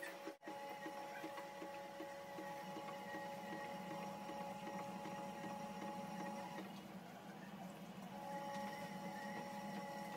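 Front-loading washing machine running a wash, its drum turning with sudsy water: a steady motor whine over a low hum. The whine drops out for a couple of seconds a little after the middle, then resumes.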